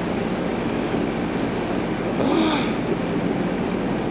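Engine of a Cygnus GM21 creel boat running steadily under way, with wind and the rush of water from the hull and wake.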